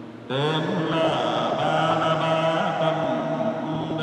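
A man's voice chanting a liturgical text on long held, slowly moving notes, resonant in a large church, starting just after a brief pause.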